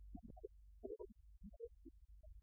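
Near silence: a low, steady room hum with a few faint, brief small sounds scattered through it.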